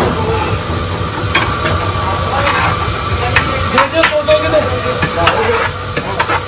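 Biryani being scooped by hand from a large metal cooking pot into plastic takeaway bags: plastic rustling with a scatter of sharp clicks and knocks against the pot, over a steady background hum and chatter.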